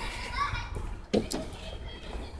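Children's voices in the background, as of kids playing, with short snatches of speech.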